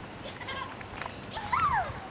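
A child's short high-pitched vocal call, rising and then falling in pitch, about one and a half seconds in, over faint background voices.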